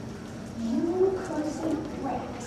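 A low-pitched voice speaking in drawn-out tones that glide up and down, starting about half a second in.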